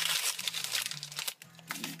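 Crinkling and rustling of something being handled by hand, irregular and crackly, dying down briefly after about a second and picking up again near the end, over a steady low electrical hum.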